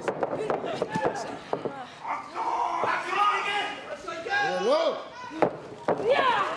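Sharp slaps and thuds of wrestlers striking and grappling in a ring. There are several in the first second or two and one more near the end, among shouting voices and commentary.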